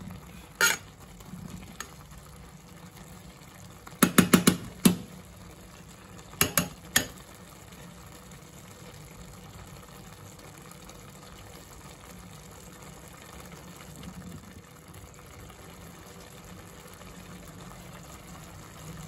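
Metal spoon stirring cooked rice in a metal pot, knocking against the pot's side. There is one knock about a second in, a quick run of knocks around four seconds, and a few more between six and seven seconds, over a steady low background hiss.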